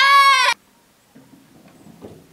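A woman's short, loud, high-pitched excited call of praise to a dog, lasting about half a second at the start and then cutting off. Quieter low sounds follow.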